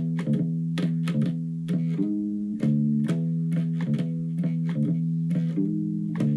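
Electric bass guitar playing a repeating verse bass line of plucked low notes built on E and D, with a hammer-on from G to G sharp.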